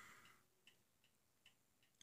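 Near silence: quiet room tone with faint, light ticking every fraction of a second.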